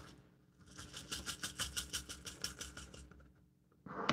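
Rice grains rattling and trickling through a funnel into a small fabric bag, a faint quick run of rattles lasting about two seconds as the funnel is jiggled, then a short knock near the end.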